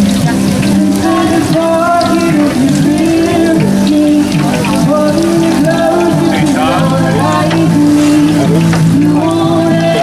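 Music with held, stepping notes throughout, over the steady sizzle of a large funnel cake frying in deep oil.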